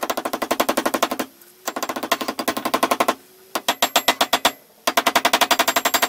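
A small hammer rapidly tapping the threaded end of a steel rod laid on a steel block, about ten strikes a second with a metallic ring. The tapping comes in four runs of about a second each, with short pauses between them.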